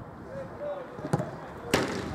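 Two sharp thuds of a football being struck, one just over a second in and a louder one about half a second later, with players' voices calling faintly.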